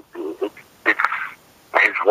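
Speech only: a man talking in an interview, in short broken phrases.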